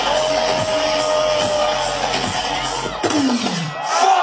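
A dubstep tune played loud on a rave sound system and recorded from within the crowd, with hard drums and heavy bass, and the crowd cheering over it. About three seconds in, the deep bass drops out and a falling bass sweep follows.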